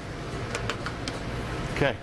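Steady kitchen background hiss and low hum with a few faint light clicks, then a man says "okay" near the end.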